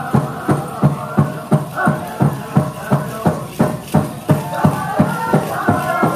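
Powwow drum and singers: a big drum struck in a steady, even beat of about three strokes a second, with high voices singing over it.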